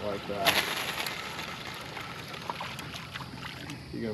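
A heavy fishing rod whipped overhead in a hard cast, a sharp swish about half a second in, followed by a few faint ticks over steady wind and water noise.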